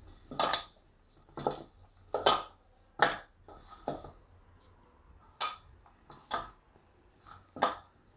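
Hands squeezing and mixing mashed boiled raw banana with spices in a stainless steel bowl: soft squishing and rustling, with sharp knocks against the steel bowl at irregular spacing, about once a second.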